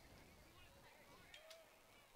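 Near silence: a faint steady background hiss, with a couple of faint ticks about one and a half seconds in.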